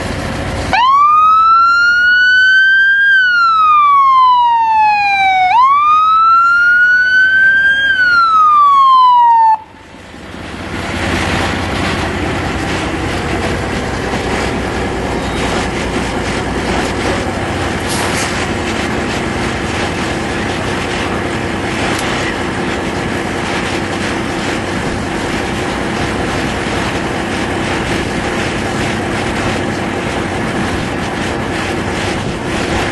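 A siren wails, rising and falling twice over about nine seconds, and cuts off suddenly. A steady noisy background follows for the rest.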